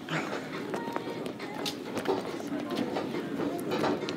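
Footsteps of sneakers on a tiled store floor, with the background murmur of shoppers and faint store music.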